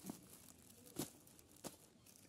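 Faint crinkling of plastic-wrapped packages being handled in a cardboard box, with three short sharp crackles, the loudest about a second in.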